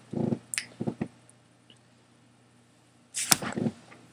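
A short closed-mouth 'mm' and a few small clicks, then about two seconds of near quiet. Near the end comes a brief rustle with a single knock as she turns and reaches for something.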